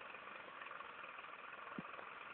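Tractor engine running steadily, with one short knock near the end.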